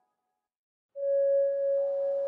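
Background music: after about a second of silence, a single sustained tone starts suddenly and holds steady, with fainter higher tones joining it.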